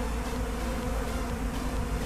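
A swarm of honey bees buzzing, a steady dense hum with no pauses.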